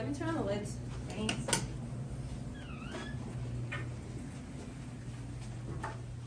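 A door being unlocked and opened: a few sharp clicks of the latch, then a short chirp that falls and rises near the middle, over a steady low hum.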